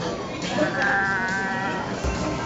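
A person's voice making a high-pitched, drawn-out sound for about a second in the middle.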